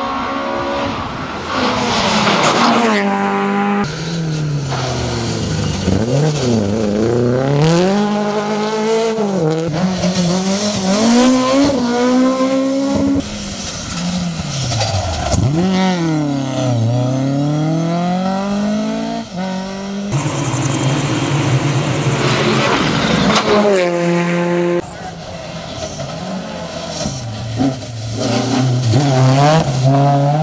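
Rally car engines revving hard as the cars race past one after another, the pitch climbing and dropping again and again through gear changes and lifts for corners. The sound breaks off abruptly several times as one car gives way to the next.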